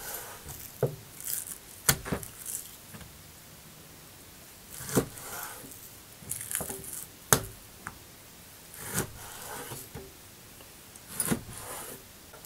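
Chef's knife cutting zander fillet into portions on a wooden cutting board: the blade slices through the raw fish and knocks on the board, about eight separate knocks spread irregularly one to two and a half seconds apart.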